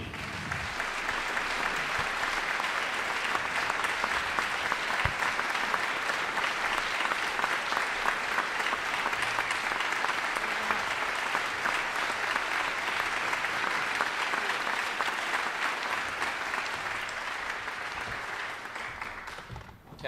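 Concert audience applauding steadily, dying away near the end.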